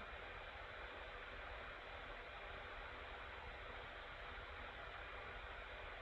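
Faint steady hiss with a low hum underneath: the room tone of the recording microphone, with no keystrokes or other events standing out.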